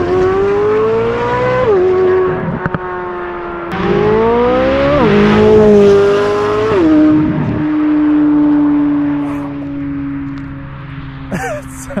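Chevrolet Corvette C8 Z06's naturally aspirated flat-plane-crank V8 accelerating hard past: the revs climb and drop back at each quick upshift, several times over. Then the engine note fades steadily as the car pulls away.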